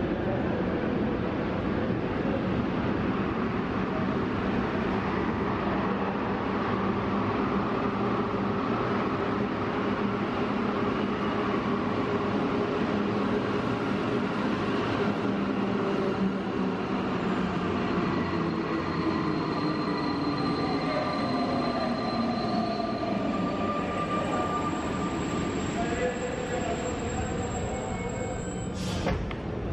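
Alstom NS93 rubber-tyred metro train running into an underground station and slowing to a stop. The noise is steady, and a falling whine from the train can be heard as it brakes over the second half.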